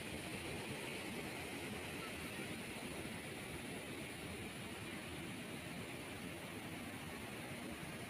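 Steady rushing noise of a river in flood pouring through a concrete weir.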